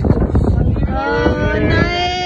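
A person's long, drawn-out vocal call, held at a steady pitch with a slight waver for about a second and a half, starting about halfway through. Before it there is rustling and wind noise.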